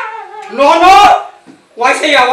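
A woman crying out in distress, one drawn-out wailing cry about half a second in, with voices around it.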